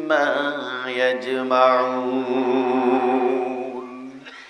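A man chanting an Arabic Quranic verse in drawn-out melodic recitation, holding long steady notes that fade out near the end.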